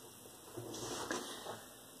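Faint handling noise from a tarot deck and hands moving over a cloth-covered table as the deck is set down, a soft rustle for about a second in the middle.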